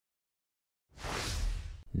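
Dead silence, then about a second in a soft whoosh of noise that lasts about a second.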